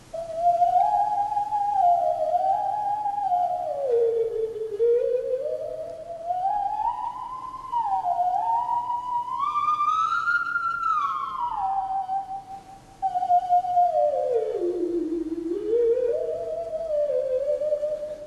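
PC theremin emulator program playing a slow, wavering tune: a single sliding tone that glides from note to note, climbs to its highest pitch around the middle and dips low twice.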